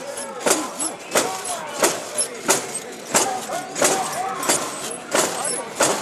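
Mikoshi (portable shrine) being carried: a crowd of bearers shouting a rhythmic chant while the shrine's metal bells and fittings clank and jingle on every beat, about three beats every two seconds.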